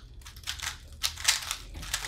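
Two 3x3 speed cubes being turned rapidly by hand during a speedsolve: a fast, irregular clatter of plastic layer turns clicking and clacking.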